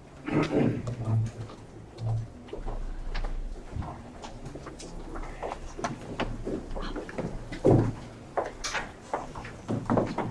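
Indistinct chatter of several voices across a meeting room, mixed with scattered knocks and clicks of people shifting chairs and handling things on the table.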